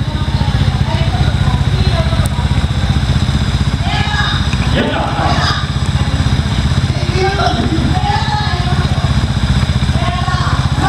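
Trials motorcycle engine idling steadily with a fast, even pulse, with voices talking over it in the middle and later part.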